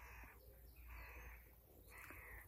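Faint caws of a crow-family bird, a few short calls in a row.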